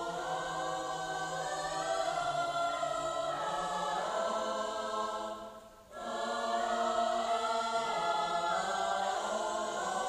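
A choir singing long, held notes in a slow song, with a short break between phrases about five and a half seconds in.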